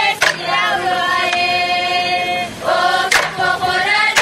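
Papua New Guinean traditional dancers singing together in a chant, holding one long note for about two seconds. A sharp percussive beat falls just after the start and another about three seconds in.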